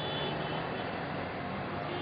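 Steady, even background noise with no distinct events, the ambient noise of the scene's location sound.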